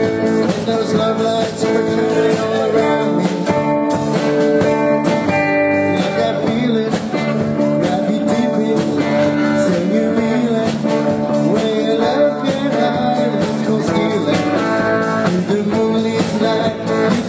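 A live band playing a song: electric guitar and drum kit with a woman singing.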